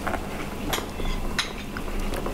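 Light metallic clicks and clinks of a small precision screwdriver working a pentalobe screw out of a MacBook Air's aluminium lower case, a few separate ticks under a second apart.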